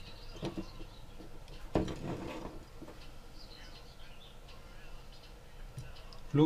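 Tools being handled on a workbench as a soldering iron is picked up and set to a circuit board: a few light clicks and a knock about two seconds in, then faint high chirps.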